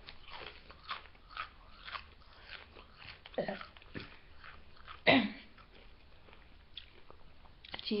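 A person crunching and chewing a Doritos tortilla chip, with crisp, irregular crunches. A couple of short vocal sounds break in near the middle, the louder one about five seconds in.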